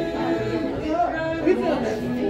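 A small group of men and women singing a gospel song together, holding long notes.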